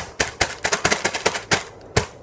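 Eggs being beaten in a bowl, the utensil clicking sharply against the side at about four strokes a second, quickening in the middle, with a short pause near the end.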